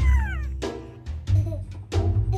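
A baby's high-pitched squeal that falls in pitch and fades within the first half second, over background music with a steady beat.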